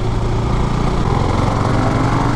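Husqvarna Svartpilen 401's single-cylinder engine running steadily on the move at low revs, lugging in fourth gear where about second was needed but pulling through on its low-end torque.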